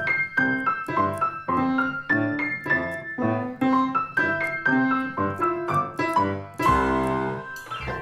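Acoustic piano playing a simple tune in single notes, about three a second. Near the end comes a loud low clash of many notes sounding at once.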